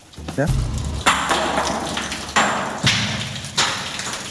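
Rock tumbling down a deep ore pass in a gold mine: four sudden crashes starting about a second in, each dying away in a rushing rumble as it strikes the shaft.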